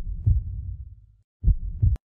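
Heartbeat sound effect: two low double thumps, about one and a half seconds apart.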